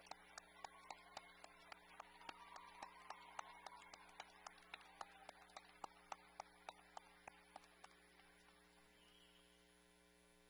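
Faint applause with individual claps standing out about three to four times a second, dying away near the end, over a steady electrical hum.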